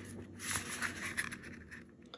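Faint rustling and light scraping of a small cardboard box being turned over in the fingers, with a few soft ticks, fading out near the end.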